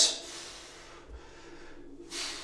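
A man breathing out long and hard through the effort of a single-arm kettlebell row, with a faint low thud about a second in.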